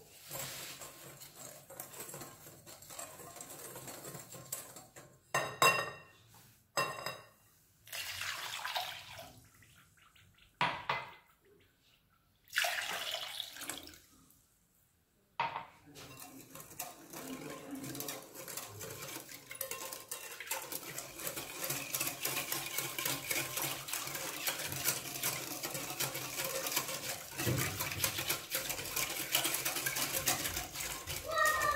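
Metal wire whisk in a glass bowl: a few ringing clinks against the glass early on, then liquid poured in at around halfway. After that comes fast, continuous whisking of milk, with the wires ticking rapidly against the glass.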